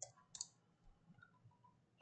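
Near silence with one faint, sharp click about a third of a second in and a few much fainter ticks after it, from a computer keyboard and mouse in use.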